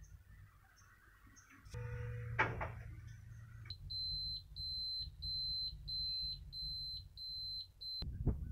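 A click and a low hum about two seconds in, then the truck's dashboard warning buzzer beeping in an even run of high half-second beeps, about one and a half a second, as the ignition is switched on with the engine not running.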